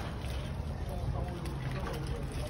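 Soapy dishwater sloshing and splashing in a large metal basin as plates are washed by hand, under a steady low rumble.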